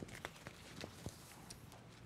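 Faint handling sounds as a machine embroidery hoop is opened and its frame lifted off a towel and stabilizer: a few light, scattered clicks and rustles.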